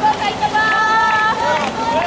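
Shouted cheering calls in high-pitched voices, short calls repeated, with one longer held shout from about half a second in to just past a second.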